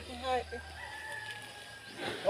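A rooster crowing faintly, its call ending in one long held note of about a second.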